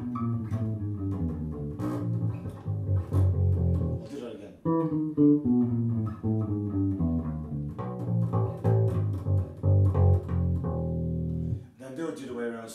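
Electric bass guitar played solo: a picked riff of single notes walking down in half steps (E, E flat, D… and G, F sharp, F, E), in two phrases with a short break about four and a half seconds in.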